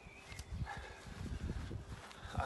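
A man's footsteps jogging on a grass lawn: a quick, uneven run of soft low thuds.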